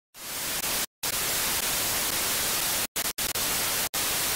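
Television static: a steady full hiss that fades in just after the start and cuts out abruptly four times for a moment, like a signal dropping out.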